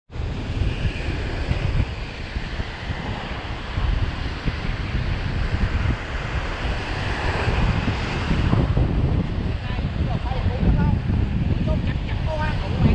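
Wind buffeting the microphone over waves breaking and washing onto a sandy shore, a steady rushing noise heavy in the low rumble.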